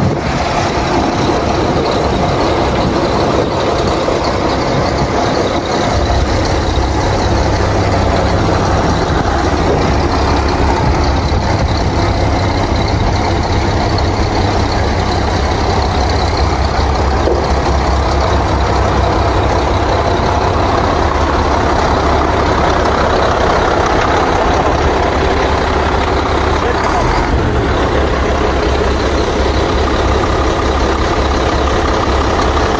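Volvo dump truck's diesel engine running steadily under load as it drives the hydraulic hoist that raises the tipper bed to dump its load of earth. The engine note settles lower and steadier about six seconds in.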